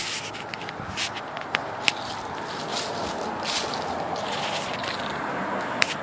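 Dry fallen leaves rustling and crackling underfoot: a steady scraping rustle with many scattered sharp crackles.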